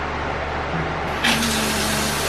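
Kitchen sink faucet turned on about a second in, water running hard from the freshly repaired tap into the sink. A steady low hum sounds underneath throughout.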